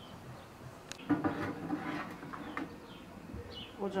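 A light click about a second in, then a buzzing insect, like a fly, close by for about a second and a half, its pitch wavering.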